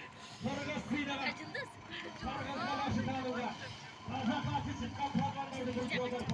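Several men talking and calling out over one another: outdoor crowd chatter.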